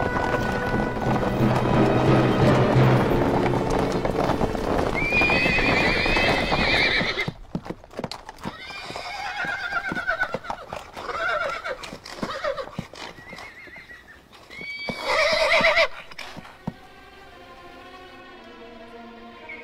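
Horses' hooves clattering under music, then the horses pull up and whinny again and again among stamping hooves, the loudest whinny near the end. The war horses are balking and neighing in alarm, the way such horses warn of beasts or an enemy close by.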